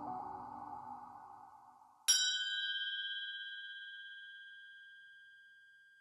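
Electronic outro music fading out, then a single bright electronic chime about two seconds in that rings on several clear tones and dies away over about three seconds.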